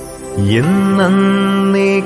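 A solo voice chanting a slow devotional hymn: it comes in about half a second in with a slide up in pitch, then holds one long note.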